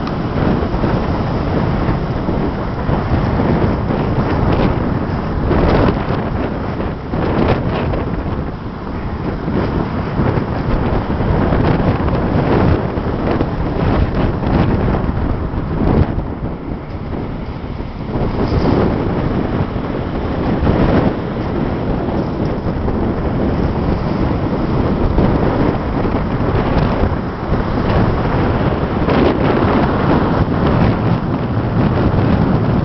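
Storm wind of around 70 km/h buffeting the microphone in gusts, with heavy surf breaking and washing over a pebble beach.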